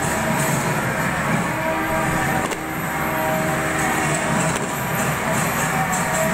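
Steady hum of a large multirotor drone flying overhead, over the continuous murmur of a large outdoor crowd.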